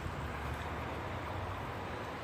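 Steady rushing of water from a shallow creek running over small rock waterfalls.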